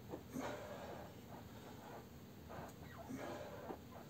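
A man breathing faintly in several short breaths while doing slow half squats.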